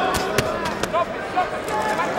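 Boxing gloves landing in a close-range exchange: two sharp smacks in the first half second, over steady arena crowd noise with shouting voices.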